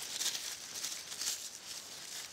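Boots stepping through dry fallen leaves, the leaf litter giving a string of soft rustles.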